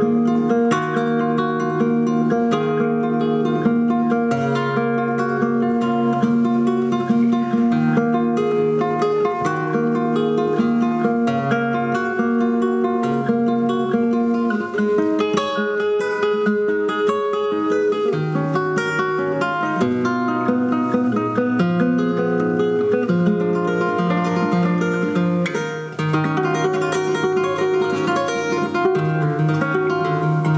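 Solo flamenco guitar playing, picked melodic runs mixed with strummed chords and sharp rhythmic strikes.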